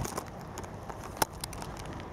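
Handling noise from a handheld camera being swung around: a few scattered clicks, one sharper click just over a second in, over a low steady background hiss.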